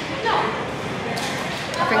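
A woman's voice briefly over the steady background noise of a busy indoor eatery, with a short hiss shortly before she speaks again.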